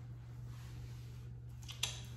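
Quiet room with a steady low hum and one brief click near the end.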